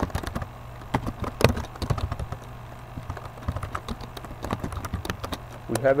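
Typing on a computer keyboard: a run of irregular key clicks over a low steady hum.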